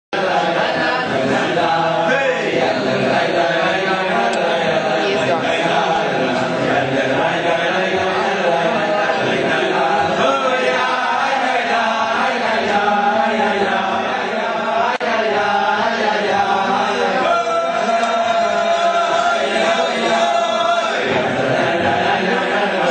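A group of voices chanting a song together, many voices layered at once and going steadily, with a brief dip about fifteen seconds in.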